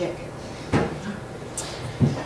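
A single sharp knock a little under a second in, like something hard bumping the table or microphone, against a quiet room.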